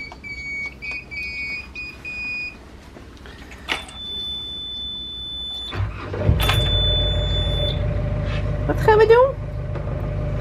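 Motor cruiser's inboard engine being started at the helm: a few short beeps from the switch panel, then a high, steady warning buzzer. The engine catches about six seconds in and settles into a deep, steady idle. A second buzzer sounds briefly after it catches, then stops.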